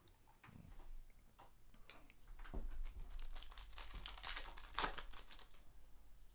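Trading cards and their pack wrapper being handled: soft rustling and crinkling that grows busier about halfway through, with a few sharper crinkles a second or so before the end.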